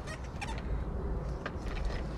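A child's small bike with training wheels rolling on concrete: a few scattered clicks and rattles over a steady low rumble.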